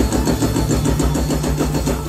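Live band music: a deep, steady bass under a fast, evenly repeating riff, with electric guitars, bass guitar, keyboard and drums on stage.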